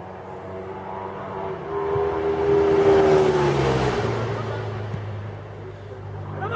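A motor vehicle passing by: engine and tyre noise swell to loudest about three seconds in and fade, the engine note dropping in pitch as it goes past.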